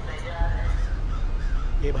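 Crows cawing, with a steady low rumble coming in about half a second in; a man's voice starts right at the end.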